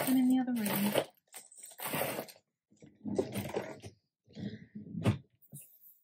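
Mostly a woman's voice: one drawn-out word falling in pitch, then a few short low-voiced bursts. A single sharp knock comes about five seconds in.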